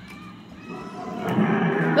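Recorded audio from a push-button museum dinosaur exhibit starting up. It swells to loud from about halfway in.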